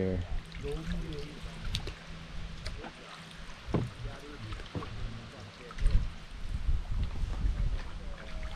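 Canoe paddling on calm river water: paddle strokes and water dripping off the blades, with a few short sharp knocks and a low, uneven rumble.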